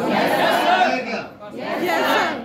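Chatter: several people talking at once, voices overlapping in a large room.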